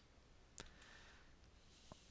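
Two faint computer-mouse clicks, one about half a second in and one near the end, over near silence.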